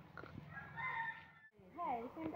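A faint rooster crow, one held call that cuts off suddenly about one and a half seconds in, followed by a voice near the end.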